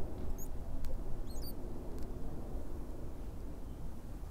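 Soft lip clicks of a man drawing on a cigarillo, with two quick high bird chirps in the first second and a half over a low steady outdoor rumble.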